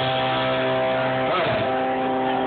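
Live guitar playing: held chords ring on steadily, with a brief wavering in pitch about a second and a half in.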